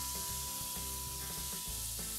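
Beef liver frying in hot olive oil in a stainless steel frying pan: a steady sizzle, with background music playing under it.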